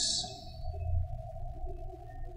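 Soft background music: a single sustained synthesizer-like note held steady under the pause, with a fainter low hum beneath it.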